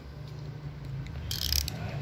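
Fast, low mechanical clicking like a ratchet, with a brief rustling hiss about one and a half seconds in.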